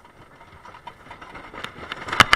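A CCI wooden roller coaster train climbing its chain lift hill: a quiet, steady mechanical rumble with a few faint clicks, getting louder toward the end.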